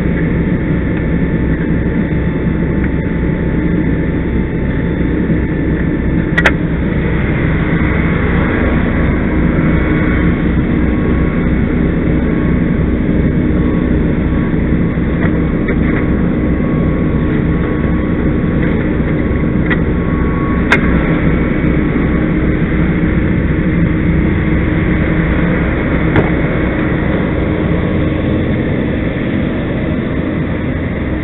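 Fire truck engine running steadily as a constant low drone. Three sharp knocks cut through it, about six, twenty-one and twenty-six seconds in.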